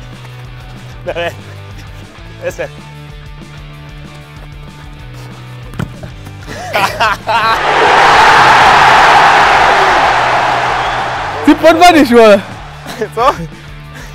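Background music with short shouts from players. In the middle, a loud swell of rushing noise rises and fades over about four seconds.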